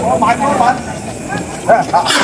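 Flame jetting from a gas cylinder's valve with a steady hiss, under the voices of people talking.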